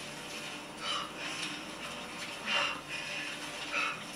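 Television drama soundtrack playing quietly: soft background music with three brief, soft rustling sounds, about a second in, halfway through and near the end.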